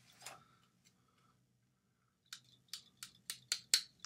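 A pair of pliers being handled and worked: a quick run of about eight sharp clicks in the second half, after a near-quiet start.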